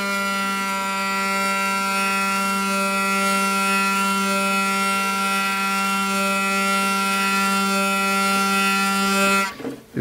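Hurdy-gurdy trompette string bowed by the cranked wheel, sounding one steady G drone as it is tuned back down from G sharp to an in-tune G, played plain without the buzzing bridge. The drone stops about nine and a half seconds in.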